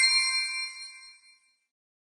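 A bright chime sound effect: a single ding with high, ringing overtones that fades away over about a second and a half.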